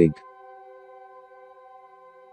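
Soft ambient background music: a steady drone of several held tones, with no beat. A spoken word ends right at the start.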